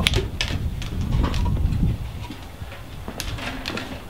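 Knocks, clicks and scrapes of a wooden-framed mortar rack of cardboard tubes being lifted and turned around by hand on a plywood board, in a burst in the first second and a half and again a little after three seconds.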